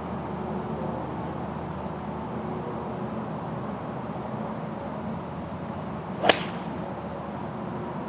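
A golf ball struck off the turf with a metal-headed 3 wood: one sharp crack with a brief ring, about six seconds in.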